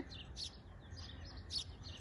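Small birds chirping in the background: a series of short, high chirps every half second or so.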